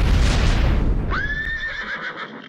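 Logo sound effect: a loud rushing burst with a deep rumble, then about a second in a horse whinnying, rising sharply and then holding one high pitch.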